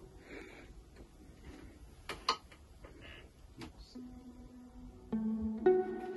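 A viola played over the studio monitors during a soundcheck: a few faint clicks, then about four seconds in, long held bowed notes that step from one pitch to the next.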